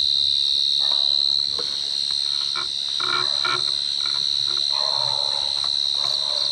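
A chorus of crickets at night: a steady, high-pitched trill that does not let up. A few short, lower sounds break in around the middle and again near the end.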